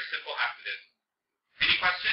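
A man's voice speaking in short phrases, with a gap of well under a second in the middle.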